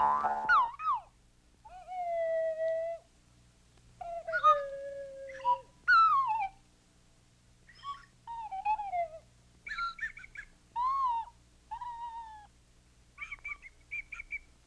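A series of short whistle-like tones from an animated film's soundtrack, each sliding up or down in pitch, with short silences between them. The first is a buzzy twang.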